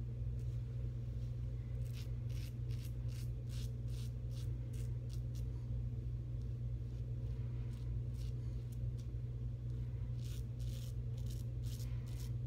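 Executive Shaving Co. Outlaw stainless steel double-edge safety razor scraping through lathered stubble on an across-the-grain pass, in short quick strokes: a run of strokes from about two to six seconds in and another near the end, over a steady low hum.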